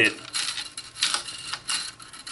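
Steel magazine-tube coil spring being handled, rattling and jingling with a run of light metallic clicks that fade near the end.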